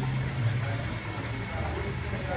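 A steady low engine hum, like a motor vehicle idling, under a haze of background noise.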